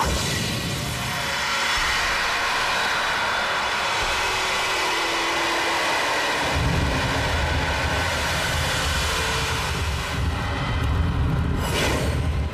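Sound effect of a magic blast breaking an illusion: a loud, steady roaring rush of noise, with a deep rumble joining a little past halfway.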